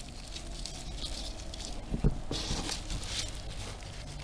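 Gloved hand rustling and pushing dry leaf and cardboard bedding in a worm bin to cover buried food scraps. There is a sharp knock about halfway, then a second of louder rustling.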